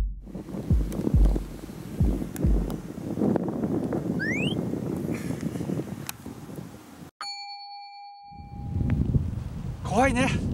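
Edited dramatic soundtrack: deep heartbeat-like thumps over the first few seconds, then everything cuts off suddenly about seven seconds in. A single sustained ding then rings for under two seconds.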